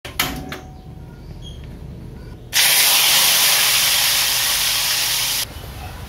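Two sharp clicks, then a loud steady hiss at a gas stove for about three seconds that starts and cuts off suddenly.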